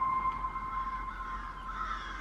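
Trailer soundtrack playing back: one steady, held high note with a fainter note above it, over a light background wash.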